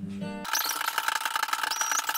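An acoustic guitar rings out for about half a second, then is cut off abruptly. The rest is a steady, rapid, high-pitched rattling buzz with two held tones and a short rising whistle near the end.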